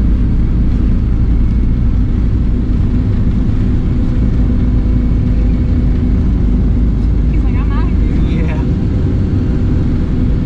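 Boeing 757-200 engines at takeoff power heard from inside the cabin: a steady, heavy roar and rumble with a steady hum, carrying on through liftoff and the first seconds of the climb.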